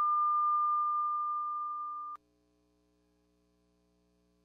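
A single steady, high electronic beep tone in the recorded dance music, fading slightly before it cuts off suddenly about two seconds in; after that, near silence.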